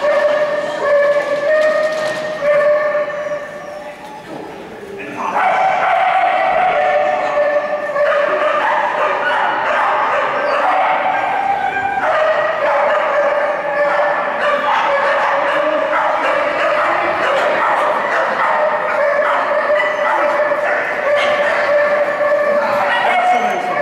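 A dog barking and whining in high-pitched yips almost without pause, with a brief lull about four seconds in.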